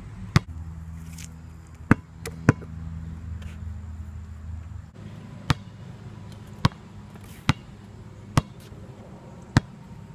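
A basketball bouncing on an asphalt court: about eight sharp, short smacks, roughly one a second and unevenly spaced.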